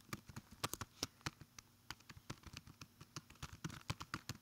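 Typing on a computer keyboard: a run of quick, uneven keystroke clicks as an email address is entered, with a short lull partway through.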